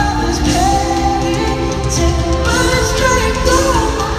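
Live pop band with electric guitars, bass and drums playing while a man sings lead, heard from the audience in a large arena.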